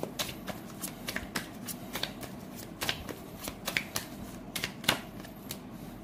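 A tarot deck being shuffled by hand: a run of irregular crisp card flicks and clicks.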